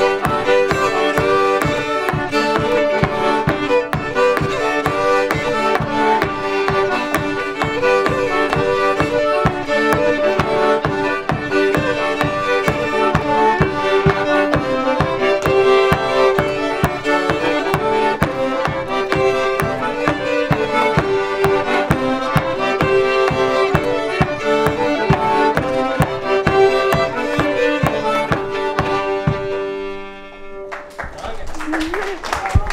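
Cajun tune played acoustically on a button accordion and two fiddles over a steady beat, stopping right at the end.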